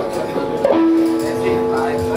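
A few held notes on an electric guitar ring out together from about two-thirds of a second in, sustaining steadily, over voices in the room.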